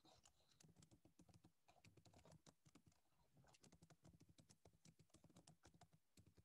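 Near silence, with faint, irregular clicking of typing on a computer keyboard.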